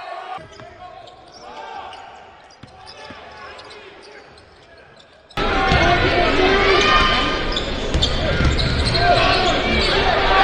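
Game sound from a college basketball game in a gym: faint arena noise for about the first five seconds, then a sudden jump to much louder crowd noise and court sounds with a ball being bounced.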